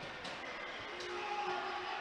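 Quiet ice-rink ambience: a steady hum of the arena, with a few faint distant tones about halfway through.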